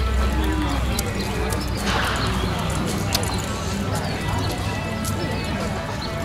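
Hoofbeats of a reining horse loping on arena dirt, heard as scattered dull knocks, under indistinct background voices.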